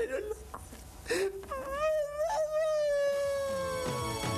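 A man's exaggerated comic crying: a few short sobs, then one long drawn-out wail that slowly sinks in pitch.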